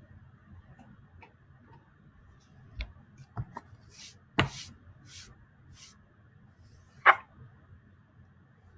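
A few scattered sharp clicks and knocks, the loudest one near the end, with four short scratchy hisses a little over halfway through: small handling noises.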